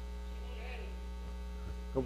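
Steady electrical mains hum in the audio feed, with a faint, distant voice briefly about half a second in.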